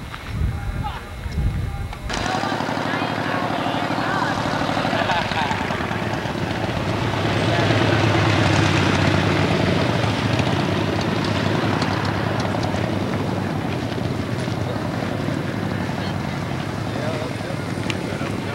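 Wind buffeting the microphone for the first two seconds. Then a motorcycle engine running close by starts abruptly, its throbbing note swelling to its loudest around the middle and easing off, with voices of a crowd under it.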